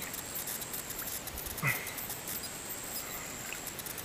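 Outdoor insect chorus: a steady thin high-pitched drone with faint ticking over it, the drone dropping out near the end. One short faint sound about one and a half seconds in.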